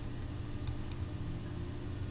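Low steady electrical hum of a quiet room, with two faint clicks close together just under a second in, as from a computer mouse stepping through moves.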